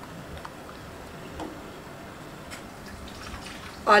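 Pot of salted water with cut potato sticks simmering on the stove: a faint, steady hiss of small bubbles with a few soft ticks and drips.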